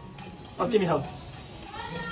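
A person's voice giving one short, high call that slides down in pitch about half a second in, over low background chatter.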